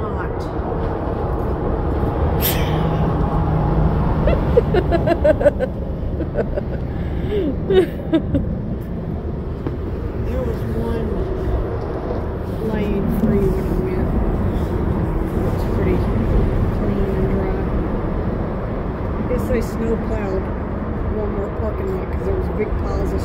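Indistinct voices talking on and off over a steady low rumble.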